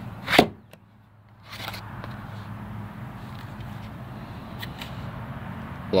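A full-size Glock pistol is pushed into a thermo-molded, Kydex-style plastic holster. A sharp knock about half a second in is followed by a few faint clicks as the gun locks into place.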